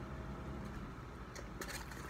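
Quiet eating sounds: soft chewing and a few faint clicks about a second and a half in, over a steady low hum of room noise.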